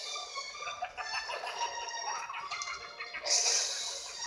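Cartoon soundtrack made of high, pitched sound effects or music, with a hissing whoosh about three seconds in.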